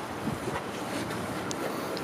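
Wind buffeting the microphone outdoors: a steady hiss with irregular low rumbling. There is one faint click about one and a half seconds in.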